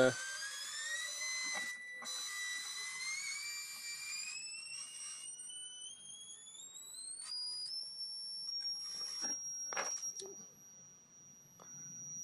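A Drawdio oscillator's whistling tone, picked up by a phone's FM radio and played through its speaker, climbing in steps from a mid whistle to a high, thin pitch as the potentiometer is turned, then holding steady. The tone breaks briefly a few times and a few clicks and crackles come through.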